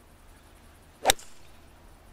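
A golf hybrid club striking a ball off the fairway turf with a descending blow: one sharp crack about a second in.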